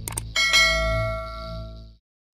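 Two quick mouse-click sounds, then a bright bell chime that rings and fades away over about a second and a half: a notification-bell sound effect for the subscribe bell being clicked.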